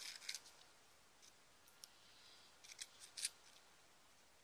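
Mostly near silence, with faint clicks and rustles of a small clear plastic bead container being handled: a few just at the start and a short cluster about three seconds in.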